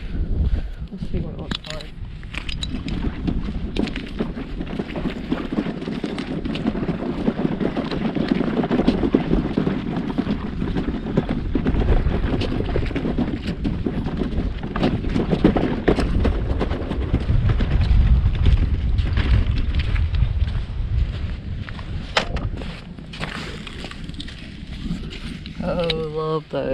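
Wind buffeting the camera microphone, a heavy low rumble that is strongest in the middle stretch, with footsteps on sand and shell ticking through it.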